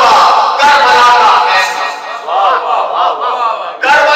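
A man's loud, impassioned cry into a microphone during a majlis address, then several voices of the gathered congregation crying out together in response.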